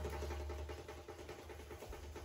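The last djembe strikes dying away in a small room, leaving a quiet room with a low, steady hum.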